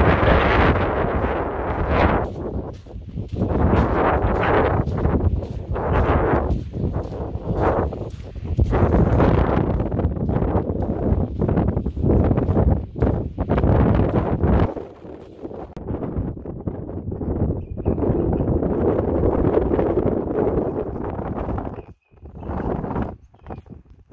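Wind buffeting the microphone in gusts, with footsteps on beach sand. The deep rumble of the wind drops away about two thirds of the way through.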